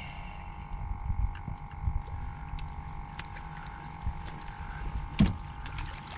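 A baby whiting thrown back overboard, landing with a single short splash about five seconds in, over a steady low rumble and a faint steady hum.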